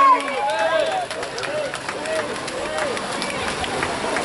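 Several voices shouting at once, no clear words, loudest in the first second and dying down after about three seconds, over the splashing of swimmers.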